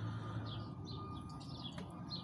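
Faint bird chirps, a few short calls scattered through a pause, over a low steady background hum.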